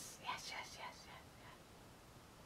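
A woman whispering or muttering under her breath, faint and brief, dying away after about a second and a half.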